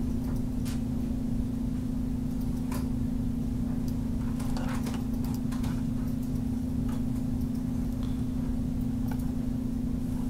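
A steady low electrical hum under the screen recording, with a few faint, scattered computer mouse clicks.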